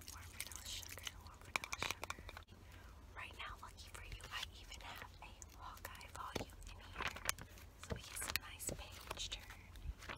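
Soft whispering close to the microphone, with scattered taps, clicks and rustles from objects being handled: a plastic packet, then a book.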